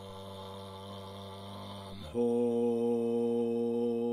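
Tibetan Buddhist mantra chanting: a voice holds a long, low, steady syllable, then about two seconds in moves to a higher, louder held note.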